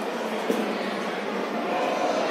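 Steady background room noise, an even hiss without speech, with one sharp click about half a second in.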